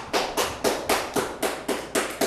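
Hand clapping, steady and even at about four claps a second, applause as a public comment ends.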